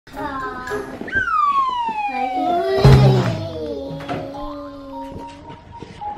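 A long descending slide-whistle sound effect that glides down in pitch over about two seconds and then holds a lower note, as the toddler goes down the slide. A thump about three seconds in, the loudest moment, as she lands in the ball pit.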